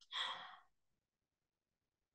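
A woman's short breath at the microphone, lasting about half a second.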